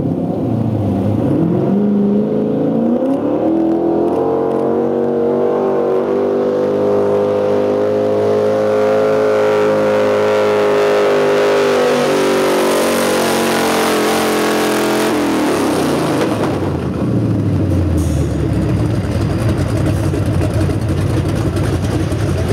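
4x4 pickup truck engine revving up over the first few seconds and holding at high revs under load while pulling the weight sled, with a harsh rush of noise over it partway through. The engine then drops back to a low idle for the rest.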